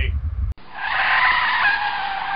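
A deep rumble that cuts off about half a second in, followed at once by a tire-screech sound effect: a long, loud squealing skid.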